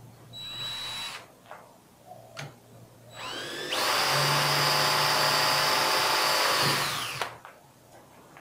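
Cordless drill boring a hole in a steel angle: a short burst near the start, then the motor whine rises as it speeds up, runs steadily at full speed for about three and a half seconds, and stops abruptly.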